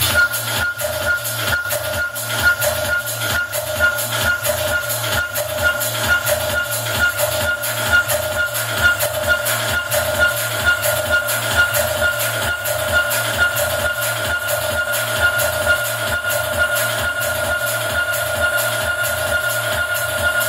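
Electronic dance music from a live DJ mix, with a steady thumping beat about twice a second under a sustained synth tone.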